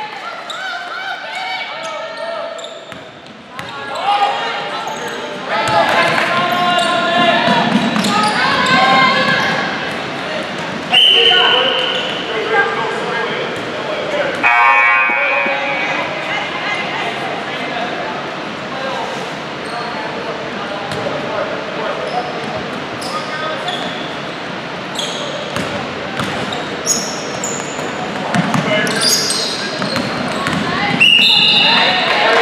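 A basketball dribbled and bouncing on a hardwood gym floor during play, with players' voices calling out and echoing around a large gym.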